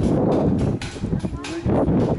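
Wind buffeting the camera's microphone in a heavy, uneven low rumble that eases for about half a second in the middle, with a brief voice sound near the end.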